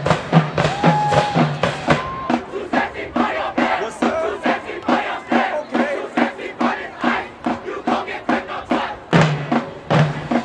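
High school marching band's drumline playing a steady cadence of about three strokes a second, with shouts from the band members over it; the fuller band sound with a low pitched part comes back in near the end.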